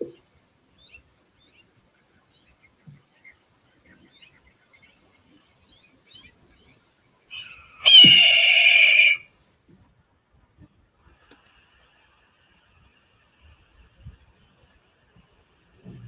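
Red-tailed hawk's scream, the cry films use for eagles and birds of prey, played back once as a recording. It comes about eight seconds in, high and harsh, and lasts a little over a second.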